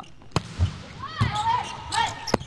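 Volleyball struck hard on a serve, a sharp single smack about a third of a second in, then a second, softer ball contact as the serve is received about a second later, with the hall's echo.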